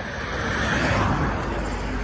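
Road traffic: a car passing on the road, a rushing tyre-and-engine noise that swells about a second in, over a low rumble.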